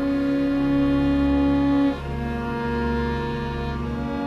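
Small bowed string ensemble of violin, cello and double bass playing slow, sustained chords, changing chord about two seconds in.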